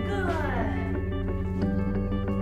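Background music led by guitar, with a quick falling run of notes near the start.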